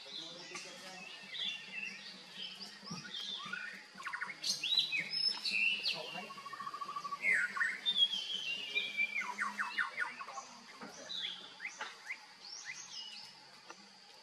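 Songbirds chirping and calling: many short chirps, quick pitch sweeps and fast trills, busiest in the middle, over a faint steady hum.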